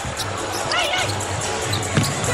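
A basketball being dribbled on a hardwood court during live play, over arena crowd noise and music from the arena sound system.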